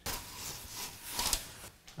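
Window blinds being worked by hand: an uneven rubbing, scraping noise that is loudest a little past the middle.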